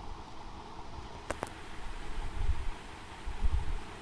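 Steady background noise of a recording room: an even hiss with low rumbles, and two faint clicks about a second and a half in.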